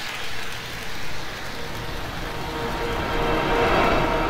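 Rolling-train sound effect: a steady rushing rumble of a train running on rails that slowly grows louder.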